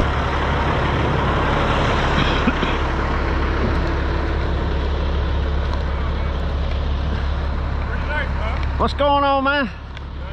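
Heavy-duty wrecker's diesel engine idling steadily with a constant low hum. About a second before the end a voice calls out briefly and loudly.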